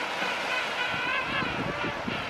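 King penguins calling in a warbling, wavering chorus over a steady haze of wind and surf, with some low bursts in the second half.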